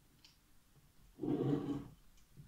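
A plastic ruler being slid across a sheet of paper by hand: a short rubbing sound a little over a second in, after a faint tick.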